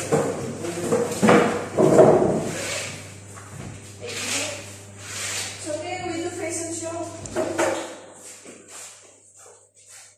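Wooden table and chair being shifted across the floor, with knocks and scraping in the first few seconds, among indistinct voices in the room. The room grows quiet toward the end.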